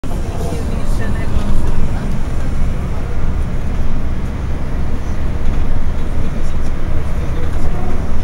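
Steady low rumble of a city bus under way, heard from inside the passenger cabin: engine and road noise, with faint passenger voices in the background.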